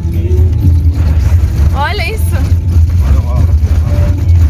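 Loud, steady low rumble inside a car's cabin as it drives over a badly broken, patched road surface. A brief voice sound comes about two seconds in.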